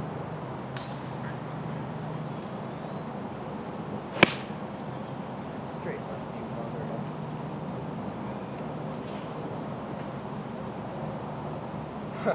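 A golf club striking a ball in a single sharp click about four seconds in, over a steady low background hum.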